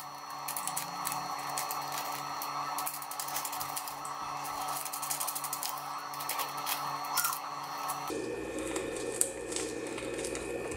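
Small clear plastic bag crinkling and rustling in light, rapid ticks as fingers rub and shake bloodworms out of it. Under it runs a steady background noise that changes in tone about eight seconds in.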